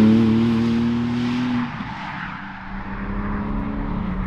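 Porsche Cayman GTS 4.0's naturally aspirated 4.0-litre flat-six driving away after a pass-by. Its engine note holds a steady pitch while fading, then drops off sharply just under two seconds in, leaving faint road and wind noise.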